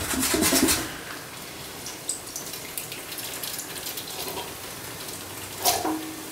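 Tinned sweetcorn and some of its liquid tipped from the can into a pan of tomato sauce, louder in the first second, then a soft steady watery hiss.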